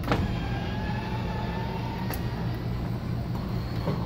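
RV's electric power awning motor retracting the awning: a click as it starts, then a steady motor hum with a faint whine slowly rising in pitch.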